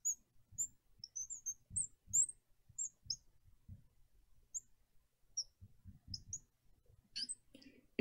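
Marker squeaking on the glass of a lightboard while an equation is written: many short, faint, high squeaks with soft taps of the tip against the glass.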